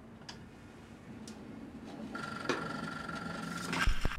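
Record player being set going: faint scattered clicks as the tonearm is handled, then a rising hiss with a steady high tone from about halfway, and a low thump just before the end as the needle meets the spinning vinyl record.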